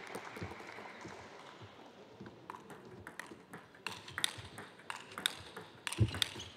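Table tennis ball being hit back and forth: short, sharp clicks of the celluloid ball on bats and table. They are scattered at first, then come louder and more regularly in the second half, about two to three a second, like a rally.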